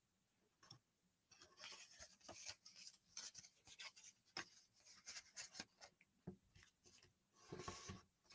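Faint rustling and rubbing of a sheet of paper being handled, folded and pressed flat along its creases by hand, a scatter of soft crinkles and small ticks.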